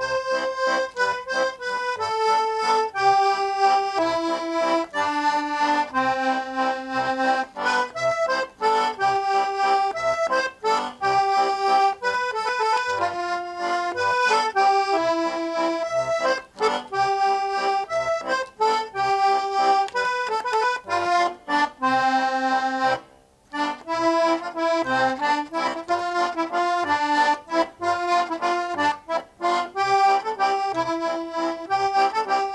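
Hohner button accordion playing an old-time waltz tune solo, a melody of sustained reedy notes over short, regular bass notes. The playing breaks off briefly about three-quarters of the way through, then carries on.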